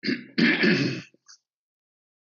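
A person clearing their throat with a cough: a short rasp, then a longer, louder clear, all over within about a second.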